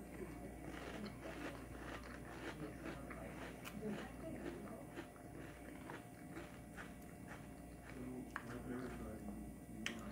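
A person chewing a mouthful of crunchy cereal in milk, quiet crunches and wet mouth clicks going on throughout, with a spoon working in the bowl.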